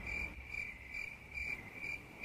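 A cricket chirping steadily: a high, clear chirp repeating evenly, about three times a second.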